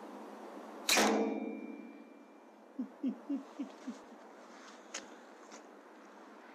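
A single sharp air rifle shot about a second in, from an Air Arms S510 .22 pre-charged pneumatic, followed by a ringing tail that dies away over about a second and a half. Five short low falling sounds follow in quick succession, then a few faint clicks.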